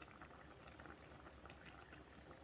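Faint, steady bubbling of a pan of pininyahang manok (chicken and pineapple stew) boiling in plenty of broth, with many small irregular pops.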